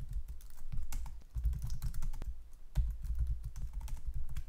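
Typing on a computer keyboard: a quick run of keystroke clicks coming in bursts with brief pauses.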